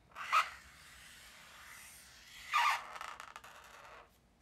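Rubbing and scraping close to the microphone, with two louder scrapes about two seconds apart and a faint continuous rub between them that stops suddenly at the end.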